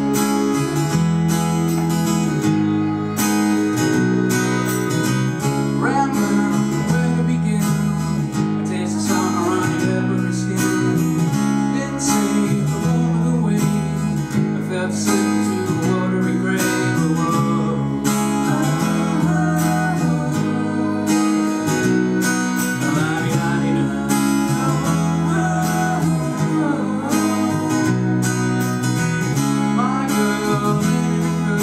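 Live folk band: strummed acoustic guitar over sustained piano accordion chords that change about once a second. A voice sings over them from about six seconds in.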